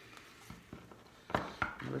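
A tarot deck being handled: quiet card handling, then two sharp clicks of the cards about a second and a half in.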